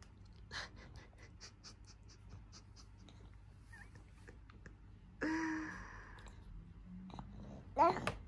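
A baby sucking puree from a squeeze pouch: a run of short, wet sucking clicks, a few a second. Then a short babbling vocal sound about five seconds in, and a louder one near the end.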